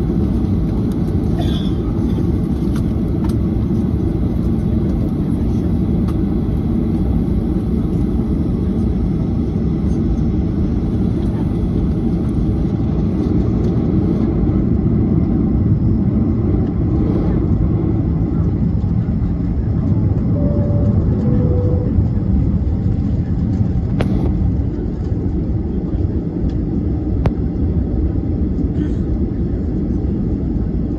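Steady low rumble inside a jet airliner's cabin, heard from a window seat over the wing as the aircraft taxis before takeoff. About twenty seconds in, a two-note falling cabin chime sounds.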